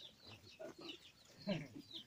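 Faint clucking of free-ranging chickens, a few short calls with a slightly louder one about one and a half seconds in.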